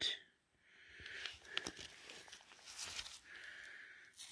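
Faint rustling from a work glove handling a rock sample as it is turned over, with a small sharp click about one and a half seconds in.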